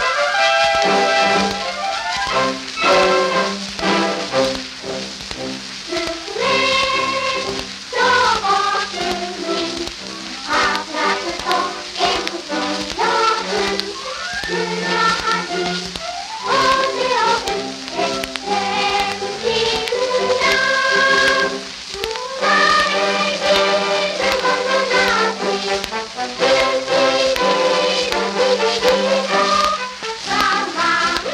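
Old 78 rpm shellac record playing a Japanese wartime children's song: a children's choir singing with orchestral accompaniment, over a light crackle of surface noise.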